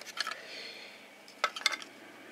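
Small hard plastic clicks and taps as a circuit board is handled and pushed into a black plastic case. A few clicks come right at the start, then a short cluster of them about a second and a half in.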